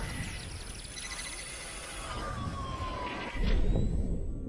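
Synthesized sound effects for an animated title: gliding electronic tones over a whooshing hiss, one tone falling slowly in the second half, with a low boom about three seconds in.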